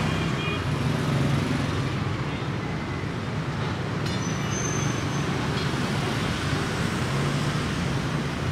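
Steady street traffic noise with a continuous low rumble of passing vehicles.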